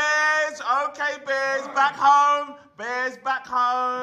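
A man's voice in long, held, sing-song tones, chanting rather than talking, with a short break about three quarters of the way through.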